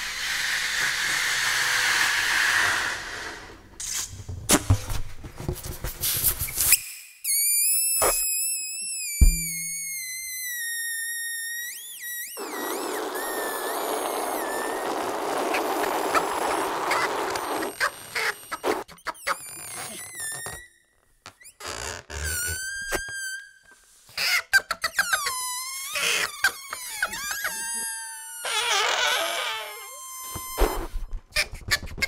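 Rubber balloons letting out air close to a microphone: a rushing hiss of escaping air and high, wavering squeals from stretched balloon necks. After about 18 s the sounds turn choppy, short squeals and clicks cut off abruptly, with a musical feel.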